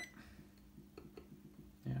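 A multimeter's continuity beep cutting off right at the start, then a quiet steady hum with a few faint ticks of the metal probe tips on the circuit board.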